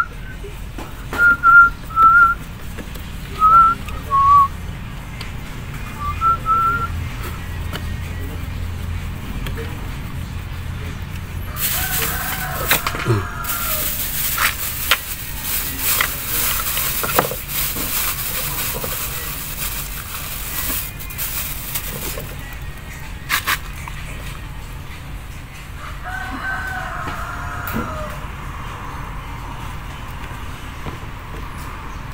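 A rooster crowing twice, once about twelve seconds in and again near the end, each crow about two seconds long. Several short, loud, high chirps come in the first seconds, and in the middle there is a stretch of about ten seconds of rustling and handling noise.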